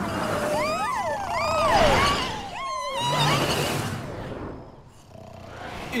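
Cartoon sound effect of a giant black hole snoring: a long rushing snore with a whistle that rises and falls twice, then a wavering whistle, fading away about five seconds in.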